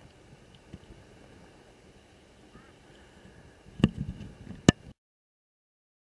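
Faint steady background noise, then two sharp knocks a little under a second apart near the end, after which the sound cuts off to dead silence.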